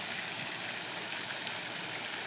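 Pond fountain spraying water into the air and splashing back down onto the pond surface: a steady hiss of falling water.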